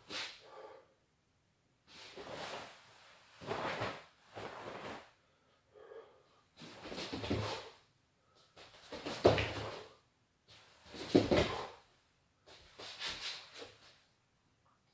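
Cloth of a heavy karate gi swishing and snapping with the footwork of kata moves, in a string of short bursts about every second or two, the two loudest with a low thump about nine and eleven seconds in.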